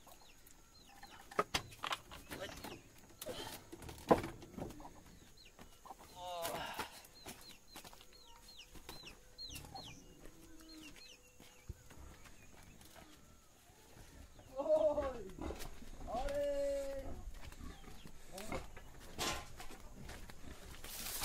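Chickens clucking at intervals, with a few sharp knocks in the first few seconds.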